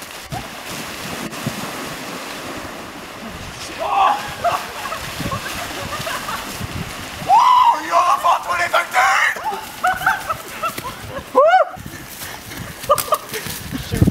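Several people splashing as they run through shallow, cold lake water, with shouts and yells from about four seconds in and a loud rising-and-falling cry near the end.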